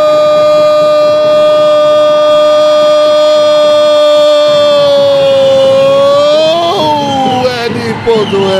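Futsal commentator's long drawn-out "gooool" shout for a goal: one loud held note at steady pitch for about seven seconds, which rises and breaks near the end into a few quick falling syllables.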